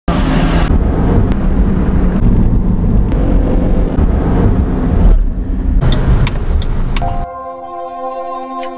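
Car cabin road noise, a steady low rumble while the car drives. About seven seconds in it cuts to music with held chords.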